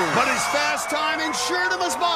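A woman yelling and screaming in excitement, several short shouts, with other voices cheering over background music.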